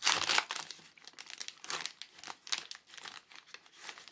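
Paper-and-plastic sterile peel pouch being pulled open by hand: crinkling and crackling of the packaging, loudest in a burst right at the start and continuing in smaller crackles.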